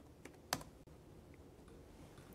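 Laptop keyboard being typed on: a faint key click, then one sharper click about half a second in.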